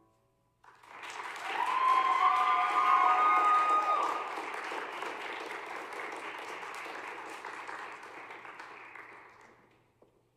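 Audience applauding, starting under a second in, with a few high whoops in the first few seconds, then thinning and dying away near the end.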